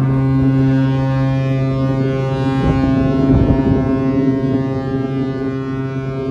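Cruise ship's horn sounding one long, steady blast, the signal of the ship getting under way from port. A gust of wind rumbles on the microphone about halfway through.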